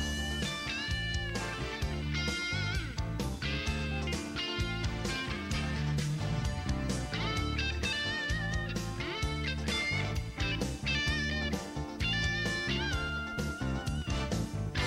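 Instrumental break in the song: a lead guitar solo with bent notes over a bass line and a steady beat.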